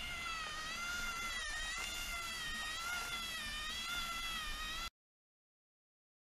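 Magnorail drive motor running with a steady whine that wavers gently in pitch, cutting off suddenly near the end. It is a motor noise the builder counts as a problem and means to cure with another motor.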